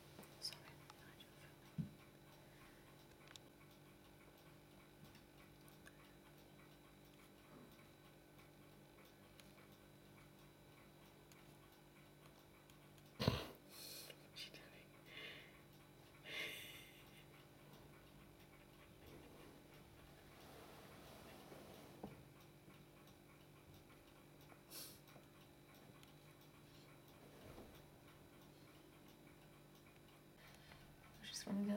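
Near silence: quiet indoor room tone with a steady low hum, broken by one sharp click about 13 seconds in and a few brief soft rustles after it.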